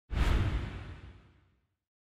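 An editing sound effect: a sudden whooshing hit with a heavy low end that fades away over about a second and a half.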